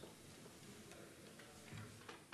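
Near silence: room tone in a committee room, with a few faint ticks.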